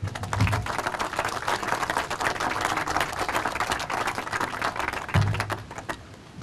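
Audience applauding: many hands clapping densely for several seconds, thinning out near the end.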